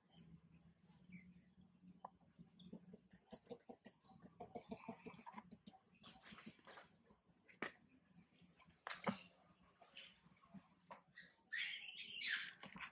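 Baby macaque squeaking in short, high chirps that fall in pitch, about two a second for the first five seconds and scattered after, with a few brief rustling scuffles among the monkeys.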